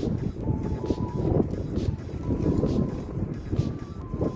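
Irregular low rustling and rubbing from gloved hands and pliers working a rubber heater-core hose loose from its pipe.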